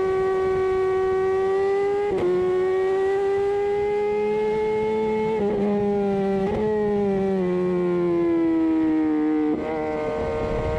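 Motorcycle engine running at road speed, heard as a steady high whine whose pitch steps down at a gear change about two seconds in, wavers twice in the middle, sags over the last few seconds as the bike eases off, and jumps again just before the end.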